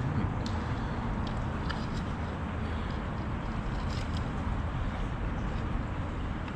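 Steady low rush of river water flowing through a culvert, with a few faint clicks.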